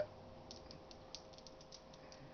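Faint, scattered small clicks and scrapes of coated copper wire being worked through a handheld Strip-All wire stripper with a small blade.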